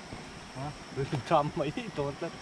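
A steady high insect chirr, like crickets, under quiet talking voices.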